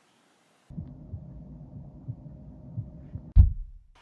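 Low, steady hum starting abruptly about a second in, with soft dull thumps through it and one heavy deep thump shortly before the end.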